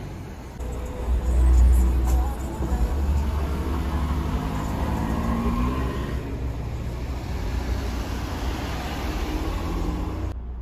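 Street traffic noise: a motor vehicle's low rumble swells about a second in and then carries on steadily.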